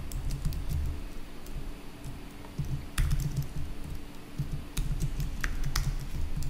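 Typing on a computer keyboard: irregular runs of keystrokes with quick clusters of clicks and soft low thuds from the keys bottoming out, over a faint steady hum.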